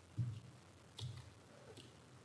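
Two faint knocks with clicks, about a second apart, from people moving about a lectern and its microphone.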